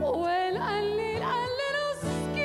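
A woman singing live over acoustic guitar accompaniment. Her voice holds a sung note that slides in pitch a few times and then settles, while the guitar sustains chords underneath with a few plucked notes.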